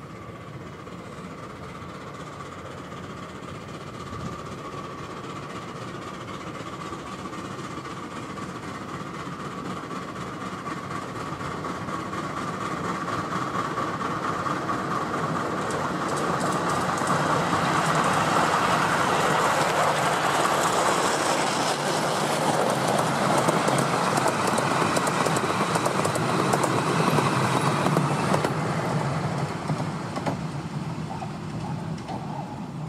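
Miniature steam locomotive, ELR 4-8-4 No.3, hauling a short rake of coaches past on the 10¼-inch-gauge track. It builds steadily over the first half, with a steady high tone early on, and is loudest for the last dozen seconds with the clickety-clack of wheels over rail joints, dropping away near the end.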